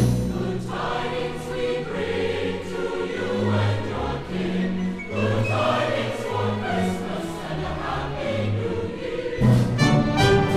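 A choir singing a Christmas carol with accompaniment, in long held chords. About nine and a half seconds in, the music turns suddenly louder.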